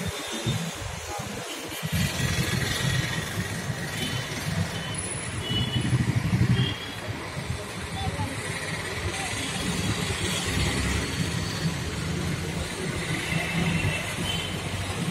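Hero motorcycle's single-cylinder engine running at idle, a steady low rumble that settles in about two seconds in and is loudest around six seconds in. Voices are heard in the background.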